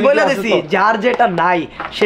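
Only speech: men talking animatedly in Bengali, with a short pause near the end.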